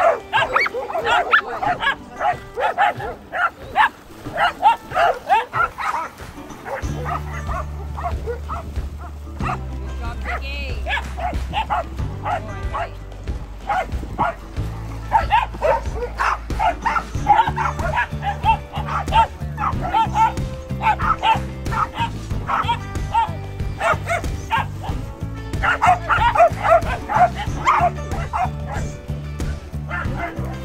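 A pack of dogs barking excitedly in quick, repeated barks, over background music whose bass line comes in about seven seconds in.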